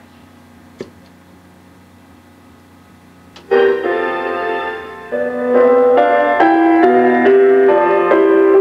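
Keyboard music with separate, stepped notes played through a loudspeaker in an open-backed cabinet, fed from a Radio Shack MPA-95 PA amplifier's 8-ohm output. It starts suddenly about three and a half seconds in, after a low steady hum and a single click.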